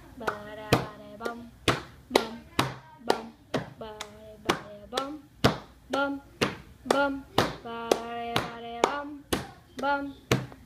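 Music: a song with a steady beat of sharp clap-like hits about twice a second, and short pitched notes between the hits.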